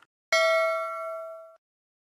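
A single bright, bell-like ding sound effect for the notification bell of an animated subscribe button, struck once about a third of a second in and ringing for just over a second as it fades away.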